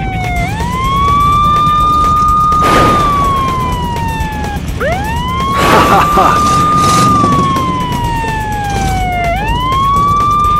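Police car siren wailing: each cycle climbs quickly, holds high for a couple of seconds, then slides slowly down before climbing again, a little over two cycles in all. Brief rushes of noise cut in about three seconds in and again around six seconds.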